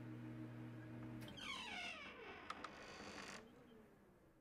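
A steady electrical hum cuts off about a second in, as the power goes out. A high squeal follows, falling in pitch over about a second, then two short clicks, and the sound fades away.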